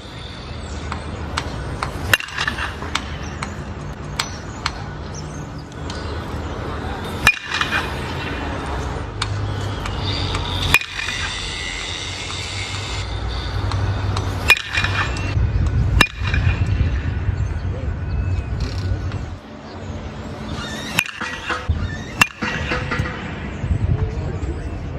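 Baseballs struck by a 2022 Louisville Slugger Select PWR BBCOR bat, a two-piece hybrid with an alloy barrel: about seven sharp pings of bat-on-ball contact a few seconds apart, over a low steady rumble.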